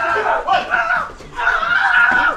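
Shouting and yelling voices, with a drawn-out cry in the second half.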